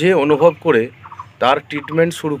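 A man's voice speaking continuously.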